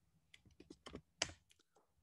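Faint typing on a computer keyboard: a handful of light, separate key clicks, with a louder one about a second and a quarter in.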